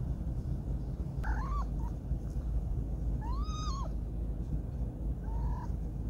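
A cat meowing three short times, the middle call the loudest and longest, rising and falling in pitch, over a steady low rumble.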